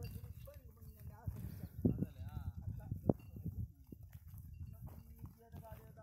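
Faint, indistinct human voice with a few sharp knocks over a steady low rumble.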